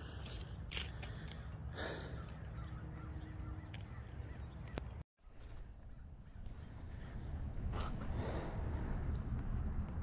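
Quiet outdoor ambience with a low steady rumble and a few faint crow caws. The sound drops out for a moment about halfway through.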